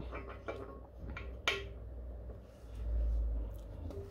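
Faint light clicks and taps of an aluminium piston and a steel feeler-gauge strip being set into a cylinder bore of a sleeved engine block. A low rumble swells up a little over halfway through.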